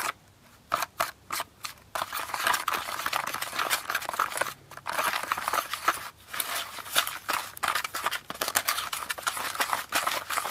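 A small plastic spoon scraping and stirring chocolate candy powder in the plastic tray of a Kracie Nerunerunerune kit, a gritty scratching as the powder is worked into a paste. After a few short strokes with pauses, it settles into steady stirring about two seconds in, with brief breaks.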